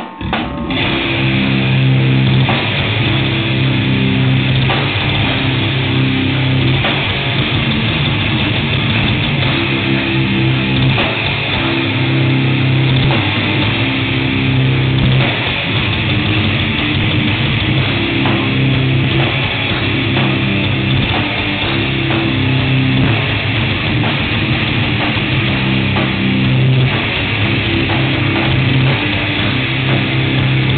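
Metal band playing live: distorted electric guitars, bass guitar and a drum kit, kicking in abruptly and staying loud, with a low riff repeating in blocks of a few seconds.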